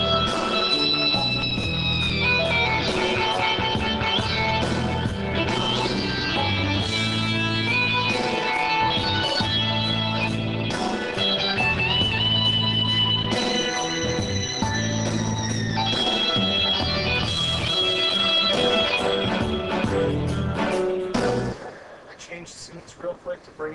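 Korg M3 workstation keyboard played live through its speakers: a combi patch with held chords and melody lines over a steady rhythmic bass pattern. The music stops just before the end.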